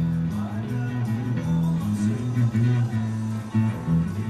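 Electric bass guitar played fingerstyle, a bass line of sustained low plucked notes that move in pitch every half second or so.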